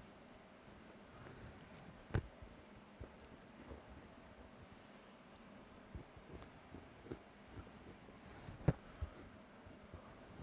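Dry-erase marker drawing on a whiteboard: faint strokes, with a couple of sharper taps, one about two seconds in and one near the end.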